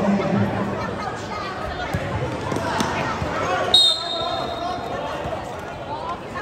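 Basketball game in an indoor gym: the ball bouncing on the court among players' and spectators' voices, with a single shrill whistle blast lasting about a second near the middle, typical of a referee stopping play.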